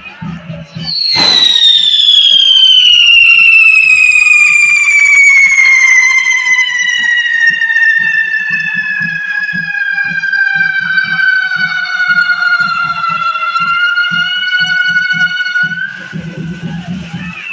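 A whistling firework spraying sparks, one of the pyrotechnics carried through the correfoc. A single loud, high whistle starts about a second in and falls slowly in pitch as it burns, rising slightly just before it stops.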